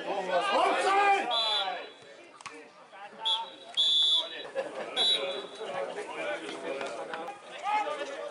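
Footballers shouting on the pitch while a referee's whistle sounds four short blasts, the longest about four seconds in, signalling a stoppage in play.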